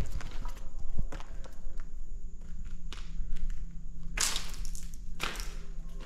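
Footsteps on a floor strewn with debris, with scattered taps and crunches, and two longer, louder crunching scrapes about four and five seconds in.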